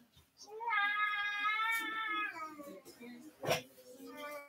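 A long, high, drawn-out cry held for about two seconds, dipping in pitch as it fades, followed near the end by a single sharp click.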